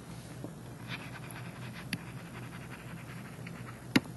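Faint room tone with soft scratching and light ticks of a stylus writing on a tablet, and one sharp click just before the end.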